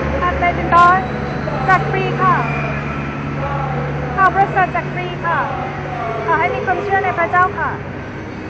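Passersby talking as they walk by, with short bits of voices coming and going, over a steady low vehicle engine drone that fades out about five seconds in.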